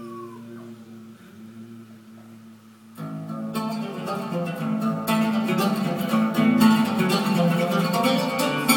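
Ouds played live by an ensemble: a faint held note dies away, then about three seconds in the instruments come in together with quick plucked notes that grow louder.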